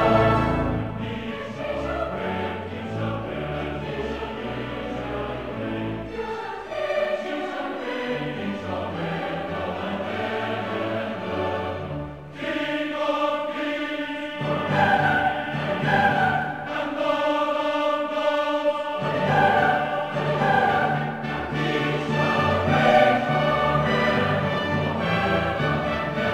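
Large mixed choir singing classical choral music with an orchestra, with a brief dip in loudness about halfway through.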